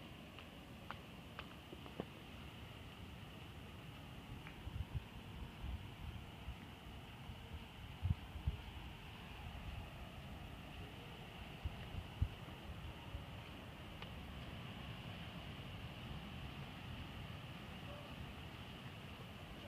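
Faint steady background hiss with scattered low thumps from a handheld phone camera being carried while walking, the strongest about eight and twelve seconds in, and a few small clicks near the start.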